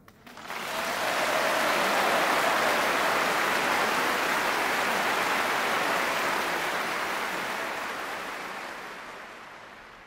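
Large audience applauding. It swells up within the first second, holds steady, then fades out over the last few seconds.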